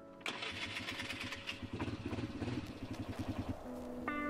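ATV engine cranked by its electric starter, catching and running with rhythmic low pulses from about a quarter second in until it drops away near the end, with faint background music underneath.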